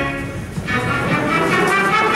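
Pit orchestra playing a musical-theatre number with brass prominent. A held chord fades out about half a second in, and the band picks up again just under a second in.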